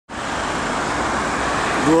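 Steady road traffic noise of cars driving along a city street.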